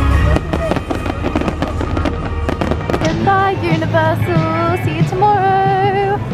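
Fireworks crackling and popping in quick succession over loud music for the first few seconds, then the music's long, held melodic notes take over.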